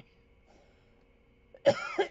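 A woman's cough, a sudden loud burst near the end after a quiet stretch of room tone.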